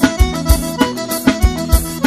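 Forró band playing an instrumental passage: an accordion melody over a steady drum beat.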